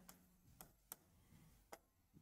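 Near silence broken by three faint, brief clicks of a marker tip tapping the whiteboard while a chemical formula is written.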